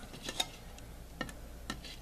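A few faint, separate clicks and light taps from a thin plastic cup being handled and set down on a small digital gram scale.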